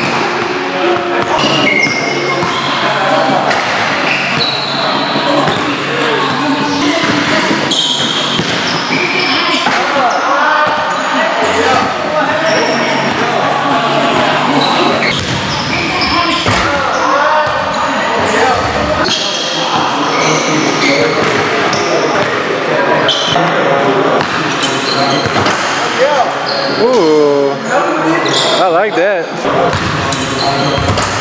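Basketballs bouncing on a hardwood gym floor, with indistinct voices, echoing in a large gym.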